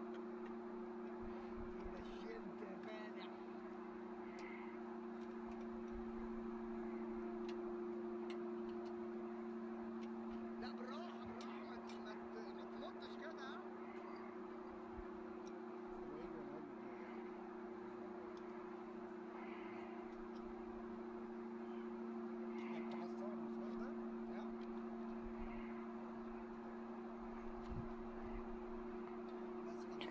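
A steady low two-tone hum, with a few faint scattered clicks.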